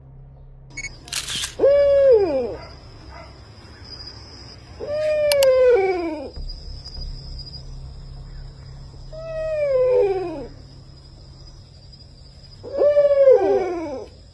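Four long wailing cries, each about a second long and falling in pitch, spaced three to four seconds apart. A steady faint high-pitched whine runs underneath.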